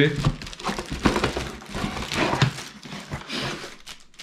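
Clear plastic packaging bags crinkling and rustling in irregular bursts as blender parts are pulled out of them and handled.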